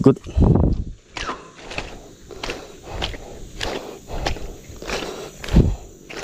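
Footsteps on dry soil scattered with twigs and dead leaves, a step about every half second or so, with a heavier thud near the end.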